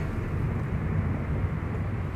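A car driving, heard from inside its cabin: a steady low hum of engine and road noise.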